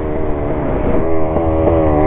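Dirt bike engine running under the rider, heard from on board, its pitch easing slightly downward and broken by short blips several times in the second half.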